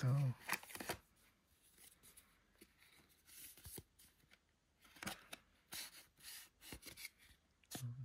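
Stiff paper cards and a card sleeve from a sunglasses box being handled: scattered short rustles, scrapes and light taps, with quiet gaps between.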